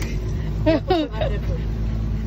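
Twin 250 hp outboard motors running with a steady low drone, and a person's voice briefly heard about a second in.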